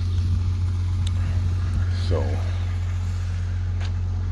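A small engine idling steadily, a constant low hum that does not change pitch.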